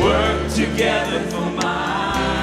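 Two women singing a gospel-style worship song into microphones with a live band, including electric guitar and sustained low bass notes.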